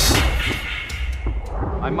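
A deep, low rumble fading away, with a few faint clicks in it.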